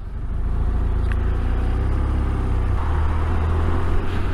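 Touring motorcycle riding along a wet road: engine and road noise with a heavy low rumble. It builds over the first half-second, then holds steady.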